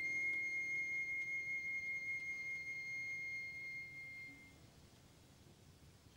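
A flute holds one long high note for about four seconds, thinning out and fading, then a brief hush in the orchestral ballet music.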